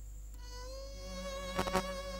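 Background score: a single buzzy, reedy note fades in about half a second in and is held steady. A low drone joins under it, and a few sharp beats come near the end.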